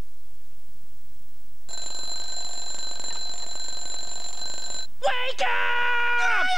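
A steady electronic ringing tone, several high pitches held together, starts about two seconds in, runs for about three seconds and stops abruptly. Just after, sliding, gliding tones begin.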